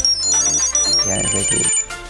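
Tile Mate Bluetooth tracker ringing its built-in melody, a run of quick high-pitched electronic notes, set off from the phone app's Find button to locate the tag.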